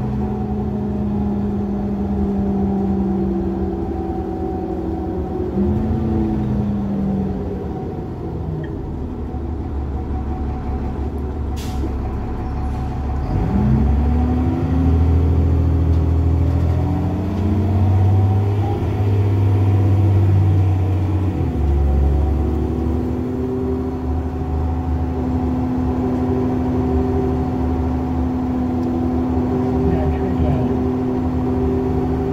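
Cummins ISC diesel engine of a 2001 New Flyer D30LF city bus, with its Allison automatic transmission, heard from inside the bus. It eases off and runs quieter for a few seconds, then pulls away with rising engine pitch about halfway through, drops in pitch at an upshift about two-thirds through, and runs steady at cruise. A single brief click comes just before the midpoint.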